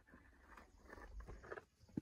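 Near silence with faint rustling and light scuffs, ending in one soft click.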